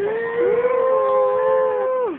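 A young boy singing one long held note, strained and loud, with a second, lower held tone joining about half a second in; the note slides down and breaks off at the very end.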